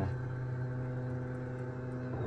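Velleman Vertex K8400 3D printer running mid-print, a steady mechanical hum of its motors and fans, with a short falling tone at the very start.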